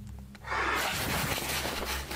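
A sudden hissing, rushing noise starts about half a second in and holds steady over a low hum. It is the unexplained noise that came out of the darkness of a basement during a paranormal investigation, so like a whoosh that it was taken for an editing transition.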